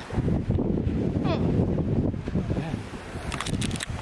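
Wind rumbling on a handheld phone's microphone, a steady low buffeting, with a few sharp handling clicks near the end.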